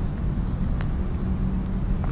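Steady low outdoor background rumble, with one faint short tick a little under a second in.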